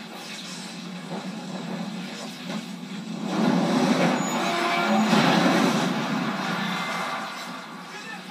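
Film-soundtrack explosion and fire: a rushing roar that swells about three seconds in, stays loud for about three seconds and dies away. It is played back through a small speaker and recorded off the screen, so it sounds thin, without deep bass.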